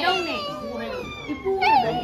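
Several women's and children's voices talking and calling out over one another, with a high, gliding exclamation near the end.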